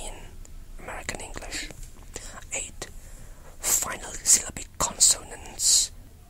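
A person whispering English speech with no voiced pitch, with several sharp hissing sibilants in the second half.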